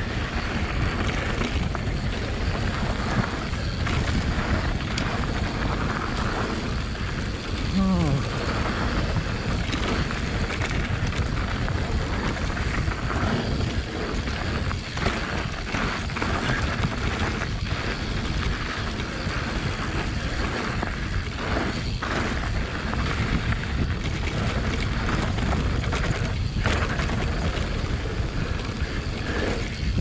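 Mountain bike running fast down a dirt and gravel trail, heard from a bike-mounted camera: steady wind buffeting the microphone over the rumble of knobby tyres on the loose surface, with frequent short knocks from bumps.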